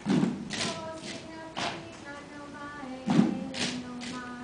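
Gourd shakers rattling in a steady rhythm, with a deep thump at the start and another about three seconds in, over held notes that step in pitch.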